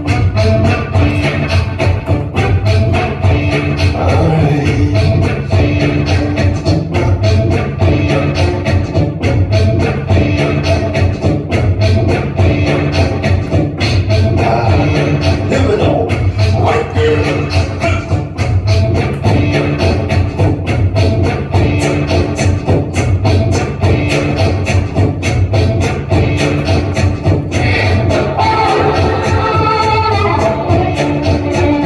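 Instrumental music with a steady, evenly repeating beat, with a harmonica played live, cupped against a handheld microphone, over it.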